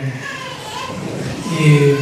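Children's voices and chatter from the audience in a large hall.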